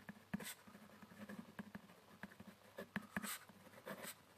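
Pen scratching on paper as words are written by hand: a run of faint, irregular strokes.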